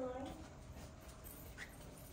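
Faint, indistinct voices in a large room, with a short pitched whine-like sound at the very start.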